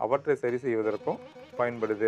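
A man speaking Tamil in a continuous talking voice, with brief pauses between phrases.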